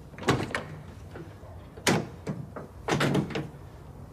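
A pair of heavy doors being unlatched and pulled open: three loud clunks with rattling, the first just after the start, the second near the middle and the last one longer, near the end.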